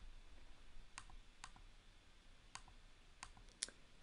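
Faint computer mouse clicks, about half a dozen short ticks scattered over near silence.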